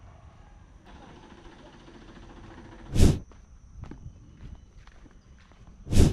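Footsteps walking on a dirt path, with two loud thumps of the camera being handled: one about three seconds in and one at the end, as a hand grips it.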